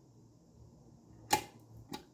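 Oyama rice cooker's cook-switch lever pushed down with a sharp click about a second and a half in, switching the cooker from Warm to Cook, followed by a fainter click half a second later.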